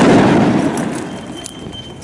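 A single loud explosive bang right at the start, its rumble dying away over about a second and a half.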